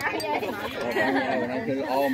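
Speech only: several people chatting.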